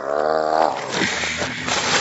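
A man's loud, wordless growling shout, wavering in pitch and drawn out for about two seconds.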